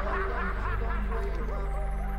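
Laughter over music, the laughing fading out partway through while the music carries on.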